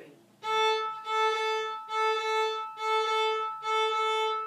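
Violin playing hooked bow-strokes in 6/8 time on one repeated note. Each bow carries a crotchet and a quaver, with the bow stopped lightly on the string between them, so the notes come out separated by short, clean gaps. The playing starts about half a second in.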